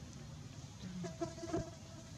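A flying insect buzzing for under a second, starting about a second in, over a low steady background rumble.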